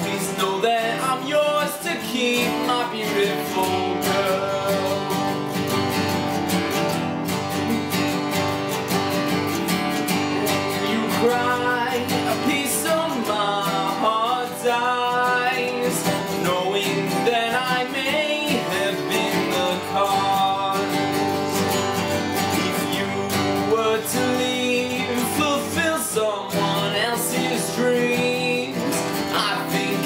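Two steel-string acoustic guitars, one an Alvarez cutaway, strummed and picked together in a steady song accompaniment, with a male voice singing over them.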